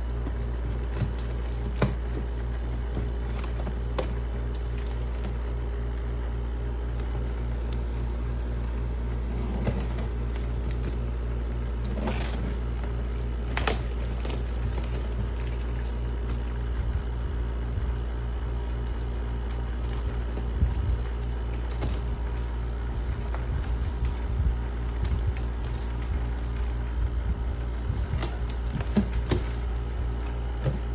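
Scissors snipping and a plastic mailer bag crinkling as a boxed vacuum cleaner is cut free, in scattered clicks and rustles that grow busier about halfway through. Under it runs a steady low hum.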